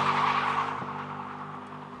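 A car engine held at steady high revs, with tyre skid noise, fading away over two seconds.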